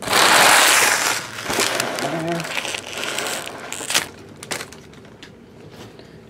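Foil trading-card pack wrappers crumpled and gathered up by hand: a loud crinkling burst in the first second, then fainter, irregular crinkles and rustles until about four seconds in.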